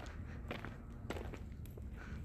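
Footsteps of a person walking on dusty, gritty ground, a run of light irregular steps over a low steady rumble.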